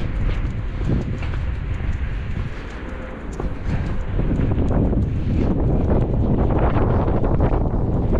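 Wind buffeting the microphone in a low, noisy rumble that grows heavier about halfway through, with faint footsteps on the pavement.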